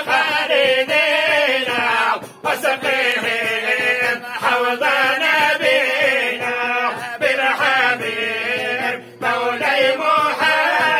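A group of men chanting an Islamic devotional supplication together, unaccompanied, in long bending held notes, with short breaks about two seconds in and again near the end.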